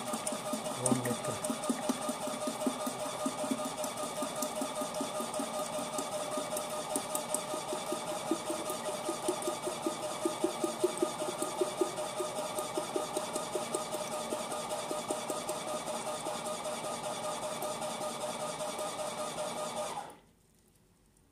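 Milkbot mini milk vending machine's dispensing pump running steadily with a fast pulsing hum as it fills a bottle, then cutting off suddenly at the end as the automatic stop reaches the 2 litres paid for.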